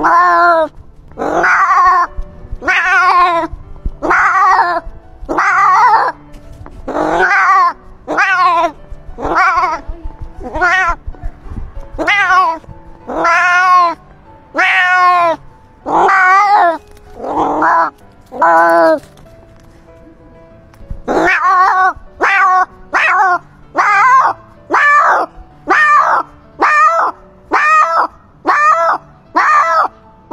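A cat meowing over and over, about once a second, over background music with a low repeating beat. The calls stop briefly and then return shorter and faster, about two a second.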